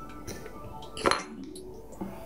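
A single sharp metallic clink about a second in, as a metal fly-tying tool knocks against metal, ringing briefly. Faint background music plays underneath.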